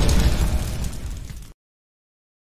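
Explosion sound effect for a fiery logo-reveal intro: a deep blast that dies away, then cuts off abruptly about one and a half seconds in, leaving silence.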